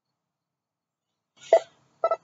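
Silence for most of the moment, then near the end a single brief vocal sound: a short hissy, voiced syllable.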